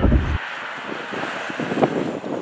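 Tesla Model X driving past on a street: a steady hiss of tyres on the road with wind on the microphone, and no engine sound. It follows a low in-cabin road rumble that cuts off less than half a second in.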